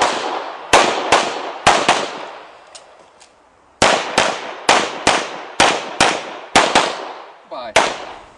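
Handgun shots fired in quick succession, about a dozen in all, each with a short echoing tail. A string of four comes first, then a pause of nearly two seconds, then about eight more in quick pairs.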